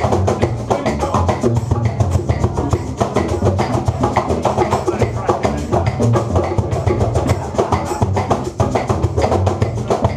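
A small acoustic band playing a Latin groove live: upright double bass, acoustic guitar and violin over a steady, busy hand-percussion rhythm with maracas.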